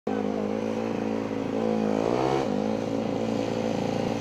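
Small minibike engine running under a child rider; about two seconds in it revs up in a rising whine, then drops back suddenly as the throttle closes.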